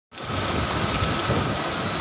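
Heavy rain coming down in a steady rush, with a low rumble and a faint steady high tone underneath.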